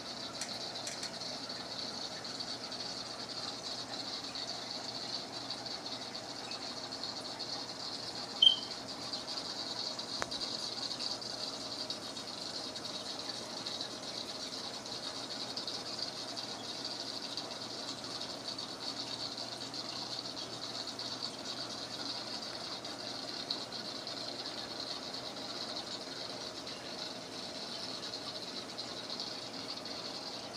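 Steady hiss and bubbling of aquarium water circulation running without a break. A single short, high squeak comes about eight seconds in.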